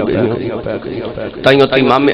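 Only speech: a man's voice in a drawn-out, sing-song oratorical delivery, softer and wavering at first, with a loud new phrase starting about one and a half seconds in.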